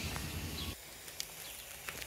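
Quiet backyard outdoor ambience: a low rumble stops abruptly under a second in, leaving a faint hiss with a couple of small ticks.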